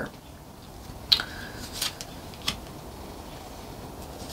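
Tarot cards being handled: three short snaps and rustles of the cards, about two-thirds of a second apart, over faint room hiss.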